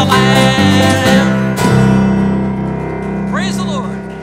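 Acoustic guitar and electric bass of a church worship band playing the last bars of a hymn, then striking a final chord about halfway through that is held and rings, slowly fading. A short gliding voice sounds near the end.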